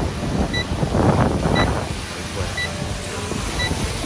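Steady rushing noise from a hovering quadcopter drone's propellers and wind on the microphone, with a short high electronic beep repeating about once a second.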